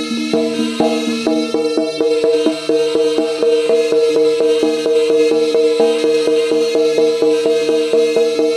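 Live jaranan music: drums and percussion playing a fast, steady beat over steady held tones.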